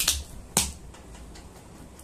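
Three sharp snaps in the first second as clear packing tape on a cardboard parcel is cut and pulled open, then only faint handling.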